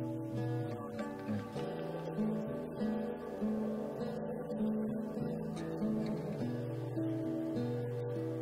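Background music: strummed acoustic guitar playing a steady run of chords.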